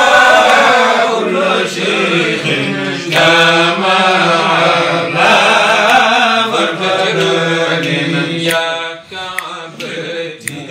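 Men chanting an Arabic devotional supplication (doua) in long, drawn-out melodic lines, loud and close. The chanting eases off about nine seconds in.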